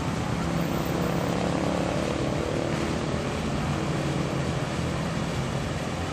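Road traffic: a steady hum of car engines and tyres from vehicles driving past.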